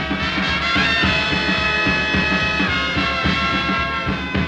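1930s swing big band playing live: a steady drum beat under the horns, with the brass holding a long high note from about a second in.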